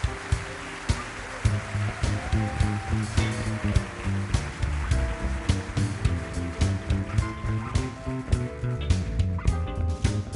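Live funk band playing a groove, with a deep, moving electric bass line under a steady drum beat and sustained notes from other instruments.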